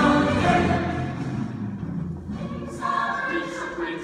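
Stage chorus of many voices singing together in a musical number, in two phrases with a short break about two seconds in.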